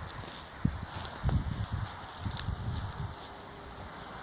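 Footsteps over dry grass and stubble, a series of irregular low thuds with rustling and a couple of sharp clicks, over steady outdoor wind hiss.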